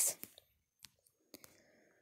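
A pause in a woman's spoken reading: her sentence trails off at the start, then a few faint, separate clicks follow.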